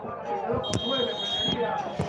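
Referee's whistle blown once, a single steady high note just under a second long, signalling that the penalty kick may be taken. Faint crowd voices can be heard around it.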